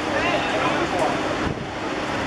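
Distant voices calling out over steady wind noise on the microphone, with a dull thump about a second and a half in.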